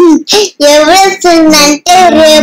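A young girl singing a playful, sing-song tune in short repeated syllables, close to the microphone.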